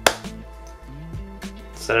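A light switch clicks off once, sharply, near the start, then soft background music plays.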